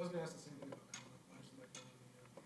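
Faint, distant speech heard off-microphone in a lecture hall, strongest in the first half second, with a few soft clicks about a second in and near the end.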